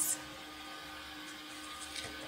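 Steady background hum with one faint, constant tone: room tone, with no distinct event.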